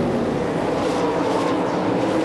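Winged 410 sprint cars' methanol V8 engines running at race speed on a dirt track: a steady, loud engine drone whose pitch eases slightly across the two seconds.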